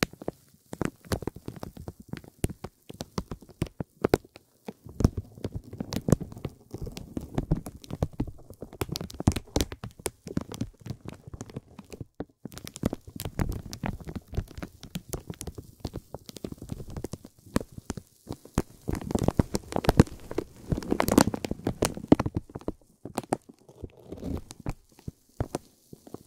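Thin, stiff vinyl film crinkling as it is handled: dense, irregular crackles in waves, briefly pausing about four and twelve seconds in and again near the end.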